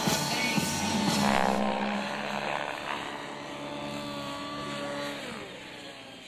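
Align T-Rex 700 radio-controlled helicopter flying with a steady pitched drone from its rotor and drive, which drops in pitch near the end. The routine's music ends with a falling sweep about a second and a half in.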